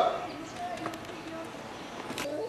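Faint, indistinct voices in the background, with a few light knocks.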